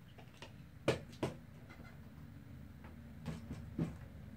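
A few light clicks and knocks as a tape measure is handled and set down on a table: two sharper clicks about a second in, two more near the end.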